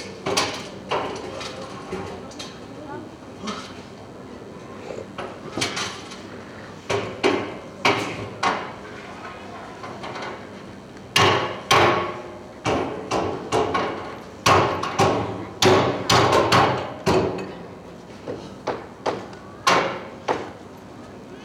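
Irregular hard hammer-like strikes on metal, each with a short ringing tail, scattered at first and then coming in quick clusters through the middle and latter part.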